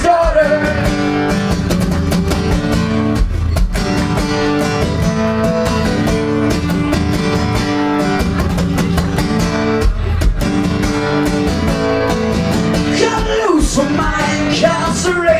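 Acoustic guitar strummed in a steady rhythm through an instrumental break in a solo song, with the singer's voice coming back in near the end.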